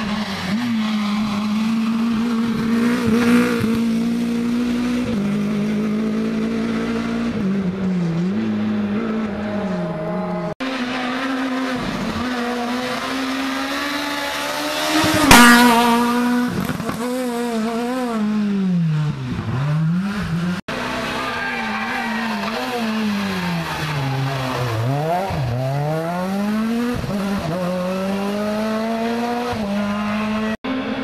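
Rally car engines at full stage pace, revving hard and dropping back again and again as the cars brake and accelerate through the bends. The loudest moment comes about halfway, as a car passes close by. The sound breaks off twice where one car's run gives way to the next.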